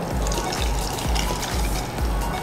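Watery mango pulp pouring in a steady stream from a plastic bowl into a cooking pot, over background music.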